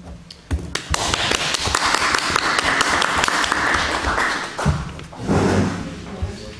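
A small audience applauding: a dense run of many hands clapping that starts about a second in, lasts about four seconds and dies away.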